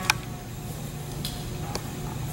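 Quiet room tone with a few faint, light clicks and taps of hands pressing a painted fabric leaf onto paper and starting to lift it off. The sharpest click comes just after the start.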